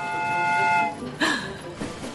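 A steam-train whistle sounding once: a held chord of several steady pitches, lasting about a second.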